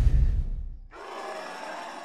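A deep boom from horror-film sound design that dies away and cuts off suddenly about a second in, followed by a quieter hissing wash with faint tones.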